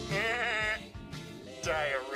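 A cartoon character's voice with a quavering, wobbling pitch, heard twice: once in the first second and again near the end, over faint music.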